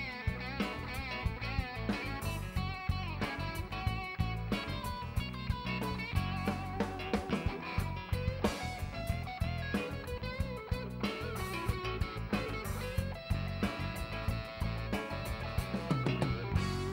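Live rock band playing an instrumental passage without singing: electric guitar over a steady drum beat, with bass guitar and electric keyboard.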